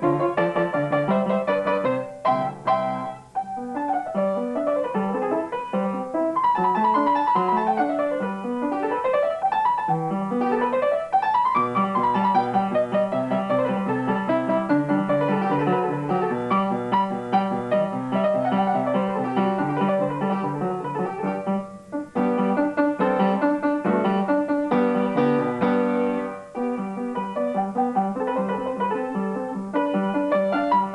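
Acoustic upright piano playing a sonatina, with quick up-and-down scale runs in the first half. The playing drops away briefly about three seconds in and twice in the last third.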